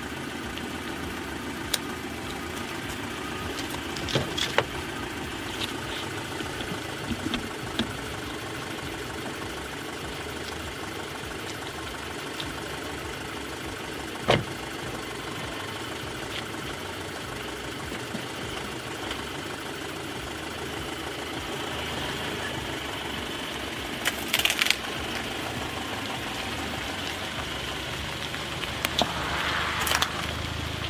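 A car engine idling steadily, with a few sharp knocks, the loudest about a third of the way in and a cluster around 24 seconds. Near the end, a rising rush of sound as the car starts to roll forward over brick paving.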